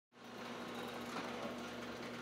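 Steady low mechanical hum with a faint hiss, the background drone of machinery or ventilation in a warehouse.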